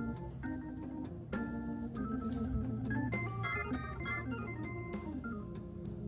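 Background organ music in a Hammond-organ style: held chords under a melody that steps up and down.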